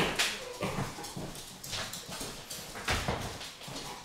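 Movement noises as a man gets up from a leather office chair and steps away: a handful of irregular knocks, shuffles and footfalls, the strongest just after the start and again near the end.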